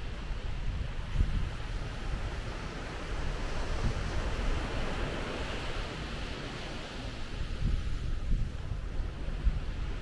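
Surf washing onto a sandy beach, with one wash swelling about halfway through, and wind buffeting the microphone with a low rumble.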